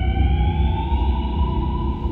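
Electric train's traction motors whining, the pitch rising smoothly as it accelerates and then levelling off about a second in, over a steady low running rumble.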